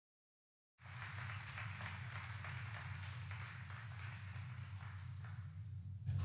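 Audience applause, cutting in abruptly about a second in and thinning toward the end, over a steady low hum.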